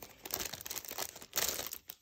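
Clear plastic packaging around a sticker book crinkling as it is handled and pulled off the book, an irregular crackling and rustling.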